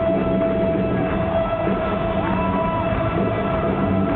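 Live rock music heard from within the audience: a long sustained electric guitar note over the band's pulsing low end, with a short sliding note about two seconds in.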